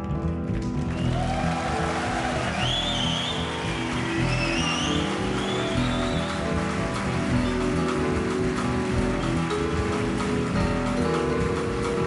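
Live jazz band playing, with double bass, drums and cymbals, as an audience applauds with whistles and a shout from about a second in, greeting the end of a double bass solo.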